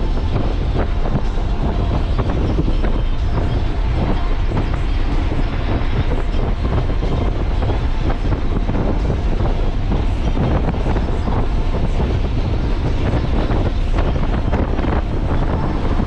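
A Nissan 300ZX's V6 driving along at a steady pace: an even, continuous rumble of engine, tyre and wind noise, heaviest in the low end, with no change in pitch or speed.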